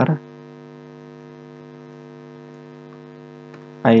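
Steady electrical mains hum in the recording, a constant low buzz with a stack of evenly spaced overtones.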